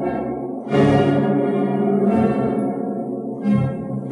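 The Chicago Stadium's huge Barton theatre pipe organ playing full, sustained chords. A louder chord swells in just under a second in, and the harmony shifts again near the end.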